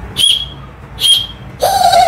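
Two short, shrill blasts from a small toy whistle built into a toy racket's handle. A lower held tone starts near the end.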